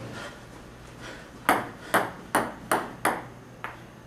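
Table tennis ball bouncing: five sharp clicks about three a second, then two fainter clicks near the end.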